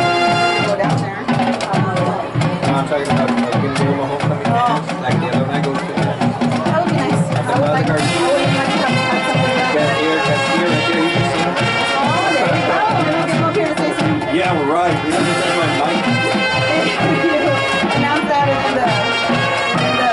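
High school marching band playing a show piece: brass over drumline and pit percussion, with steady drum strokes throughout. A held brass chord breaks off about a second in, a busier, softer passage follows, and the full brass comes back in strongly about eight seconds in.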